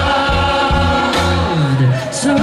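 Live band music with a large group of voices singing together like a choir over a steady bass line, carried through a concert PA.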